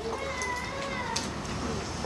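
A faint, high-pitched, drawn-out cry over low room hum, fading out about a second in.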